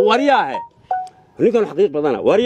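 A man talking, broken about half a second in by two short electronic beeps of different pitch, one after the other, before the talk resumes.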